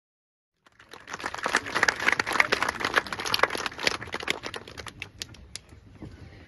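A crowd clapping: the applause starts about a second in, grows dense, then thins out to a few last separate claps near the end.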